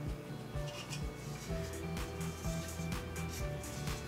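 Background music with a steady beat, over a few faint taps of a knife cutting through a rope of biscuit dough onto a stone countertop.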